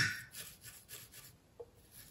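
A soldering iron tip jabbed into a brass wire wool tip cleaner: a sharp tap as it goes in, then faint, scratchy rubbing strokes for about a second as the excess protective solder coat is wiped off the tinned tip.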